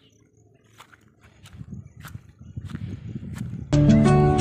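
Footsteps through grass, a soft step about every half second, over a low rumble that grows steadily louder. Instrumental music starts suddenly near the end.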